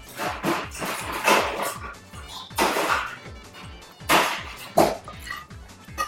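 Close-up eating sounds of curry and rice come in several loud bursts: a spoon working the plate and chewing. Steady background music runs under them.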